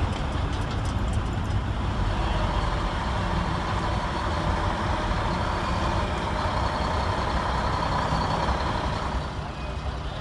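A motor vehicle engine running steadily, a low rumble that drops a little in level near the end.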